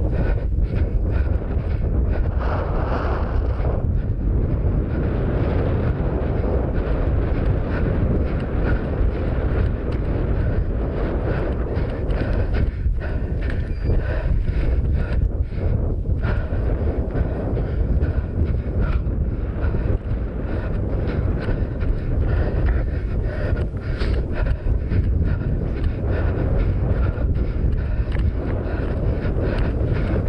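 Wind buffeting a head-mounted GoPro's microphone as a steady low rumble, with the runner's footfalls on rough grass showing as irregular soft thuds.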